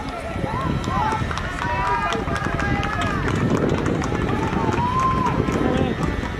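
Shouts and calls of football players and coaches across an open pitch during play, many short rising and falling voices overlapping, with scattered short knocks of feet and ball.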